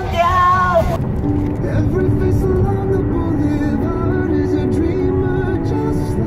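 A young person sings with wavering pitch into a karaoke microphone for about the first second. Then an added background music track with a simple stepping melody takes over, over the low rumble of a car driving on the highway.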